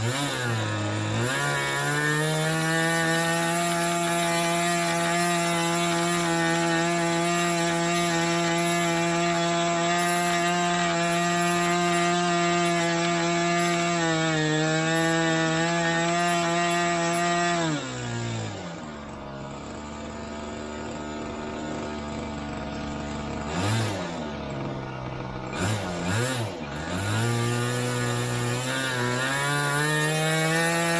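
Model aircraft glow engine on a Limbo Dancer funfly plane running up: it climbs to high revs and holds them steady, drops to idle a little past halfway with two short throttle blips, then opens up to high revs again near the end. The engine is running rich, most of all at the bottom end.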